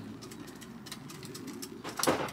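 A bird's faint, low cooing.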